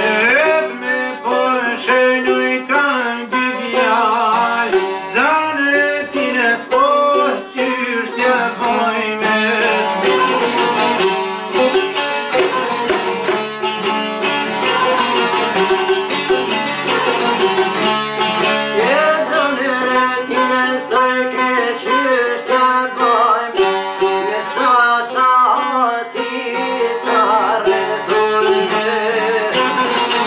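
Albanian long-necked lutes, a two-stringed çifteli among them, played together in a fast folk tune: rapid plucking and strumming with sliding melodic runs.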